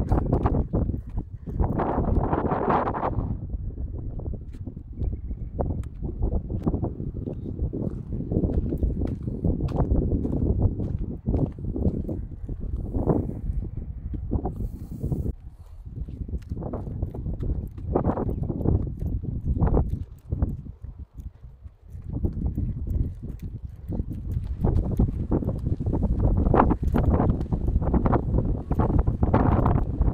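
Wind buffeting a phone microphone in a low rumble, with a brief lull about two-thirds of the way through. Footsteps knock on weathered timber steps and boardwalk throughout.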